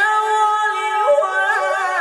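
A qari's melodic Quran recitation in a high male voice, amplified through a microphone: a long held note breaks into a quick ornamented run of pitch turns about a second in, then settles onto a held note again.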